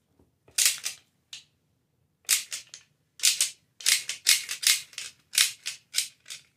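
Clear plastic candy wrapper crinkling in a toddler's hand: short crackles that come in clusters with brief pauses between them.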